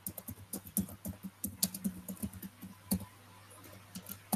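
Typing on a computer keyboard: quick, irregular keystrokes, about five a second, thinning out near the end, over a faint steady low hum.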